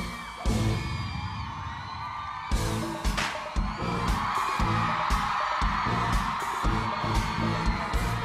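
Loud hip-hop dance track with a heavy bass beat, thinning out briefly about a second in and coming back hard. An audience cheers and whoops over it, louder in the second half.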